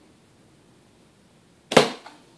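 A single sharp shot from a low-powered pellet gun, about 1.7 seconds in, with a brief ring after it.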